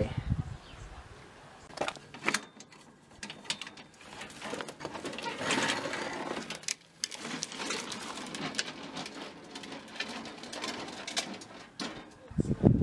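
Knocks, clatter and rattling of a small wheeled gas barbecue being moved and wheeled across paving, with longer stretches of rattling in the middle and later part.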